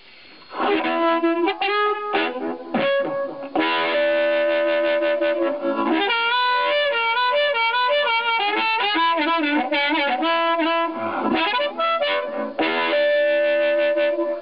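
Blues harmonica cupped around a Shure Slim-X 777 crystal harp mic and played through a harp amp: held chords, then a run of fast wavering notes, ending on a long held chord.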